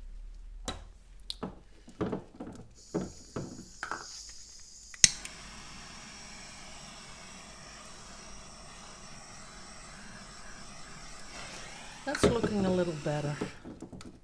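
Small handheld butane torch hissing steadily for about seven seconds after a sharp click about five seconds in, as it is played over wet poured acrylic paint to bring cells up to the surface. A few light handling clicks come before it.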